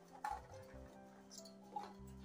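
Faint background music with sustained notes, and two light taps, about a quarter second in and near the end, as peeled garlic cloves drop into a steel mixer-grinder jar.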